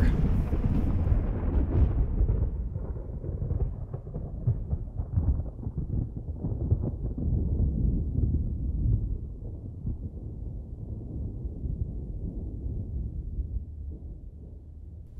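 A long, deep rumble of thunder, loudest and crackling at first, then slowly dying away over the following ten seconds or so.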